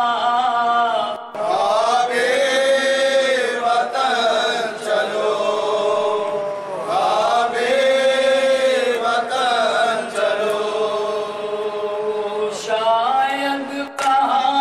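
Male voice chanting a noha, a Shia lament sung without instruments: long, held, wavering notes that slide up and down, in long phrases with short breaks for breath.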